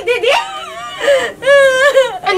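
A woman's high-pitched voice in drawn-out, whining tones, with a long held note near the end.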